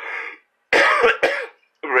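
A person coughing and clearing the throat: a short breathy rasp at the start, then a louder, harsher cough about a second in.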